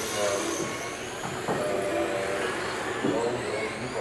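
Several electric 1/10-scale RC touring cars racing on a carpet track, their motors whining in high tones that rise and fall as they accelerate and brake.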